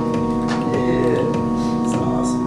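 Electronic music from a software synthesizer played live on student-built controllers: a held chord with a few percussive hits over it.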